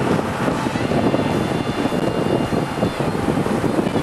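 Cabin noise of a BMW 335i at speed: the turbocharged straight-six running, with steady road and wind noise.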